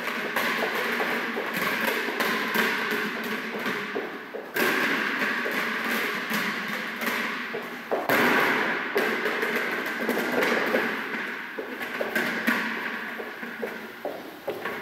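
A rubber ball bouncing and thudding on the floor while a person runs across, the knocks echoing in a large hall. The noise comes in three waves, each starting suddenly and fading over a few seconds.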